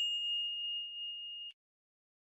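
A single bell-like ding sound effect: one clear high tone that fades slowly, then cuts off abruptly about one and a half seconds in.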